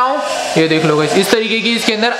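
Simulated engine sound from the built-in speaker of a toy RC Suzuki Jimny, a recorded car engine running, its pitch shifting up and down as if revving.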